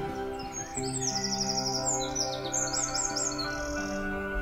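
Small songbird chirping and trilling in quick series of high notes, over soft, steady background music.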